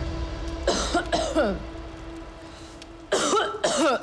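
A person's voice in two short bursts: a cough or throat-clearing sound about a second in, then voice sounds again in the last second, over faint steady background music.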